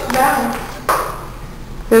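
A voice sounds briefly, then there is a single sharp knock about a second in, followed by a lower hum of room noise.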